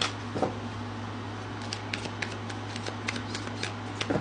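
A deck of tarot cards being shuffled by hand: a run of light, crisp card-on-card flicks, sparse at first and quicker from about halfway through.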